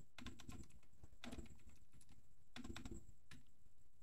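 Computer keyboard typing: a quick run of quiet keystrokes.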